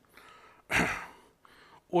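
A man's single short, audible breath about three quarters of a second in, in a pause between his sentences.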